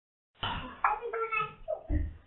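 Indistinct voices talking in a small room, starting about half a second in after a brief silence.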